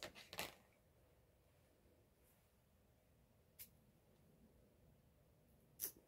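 Near silence with a few faint clicks of handling: a small glass perfume bottle being turned in the hands, two quick clicks at the start, one about midway and one just before the end.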